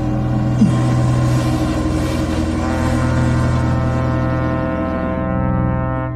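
Dramatic film score of sustained, brass-like low chords held over a deep low drone, fading out at the very end.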